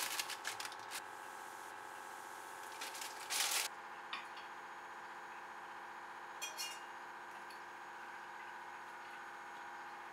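A plastic instant-noodle packet crinkling as the noodles are shaken out into a pan, followed by a short rustle about three seconds in and a few light clicks later. A steady hum of several even tones runs underneath.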